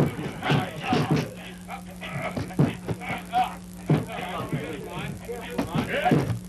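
Film soundtrack of dock work: music and indistinct voices with scattered knocks of crates being handled, over a steady low hum.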